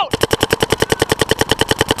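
Planet Eclipse Geo 3 electronic paintball marker firing a rapid, even stream of shots, about a dozen a second, without a break.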